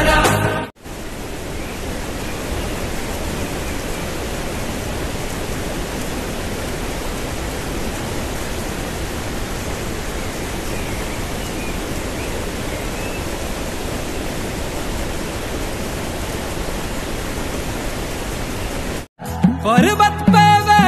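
Waterfall: the steady, even rushing of falling water, with a few faint high chirps over it. Music plays briefly at the start, cuts off abruptly, and returns at the end.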